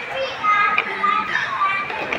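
High-pitched children's voices chattering and calling out at play, with other people talking around them.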